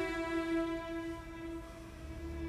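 Background music: one long held, string-like note that slowly fades.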